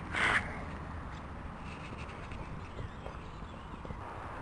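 A horse landing over a cross-country fence, with a short burst of noise as it comes down, then faint hoofbeats as it canters away on grass.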